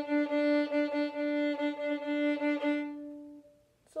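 Violin played with the old-time fiddle shuffle bowing rhythm: short, evenly pulsing bow strokes on a single sustained note. It stops about three and a half seconds in.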